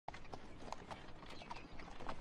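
Faint clip-clop of horse hooves pulling a carriage, several light hoof strikes a second.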